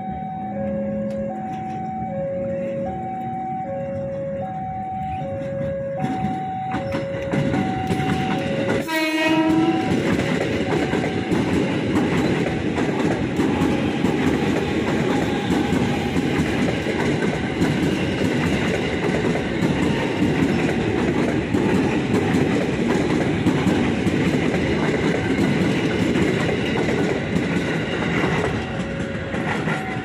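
A steady two-note alternating tone, then a short horn blast from a KRL Commuter Line electric train about nine seconds in. The train then runs close past for about twenty seconds, its wheels clattering over the rail joints in a loud rumble.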